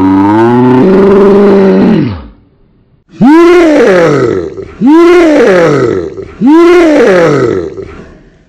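A man's voice screaming loudly: one long held yell that breaks off about two seconds in, then three near-identical yells, each rising and then falling in pitch, about a second and a half apart.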